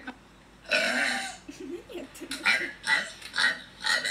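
A girl's long, loud burp beginning less than a second in, followed by several shorter vocal bursts.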